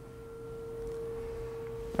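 A steady, pure electronic-sounding tone held at one pitch over quiet room noise, with a fainter higher tone that fades out about halfway through.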